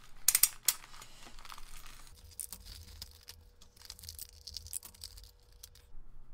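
A plastic postal mailer being torn open by hand, with a few sharp rips in the first second. Crinkling of plastic and foil packaging follows as the contents are pulled out.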